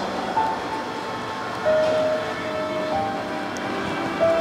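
Soft background music of held notes that change pitch every second or so.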